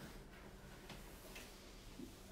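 Near silence: low room tone with three faint ticks spread across it.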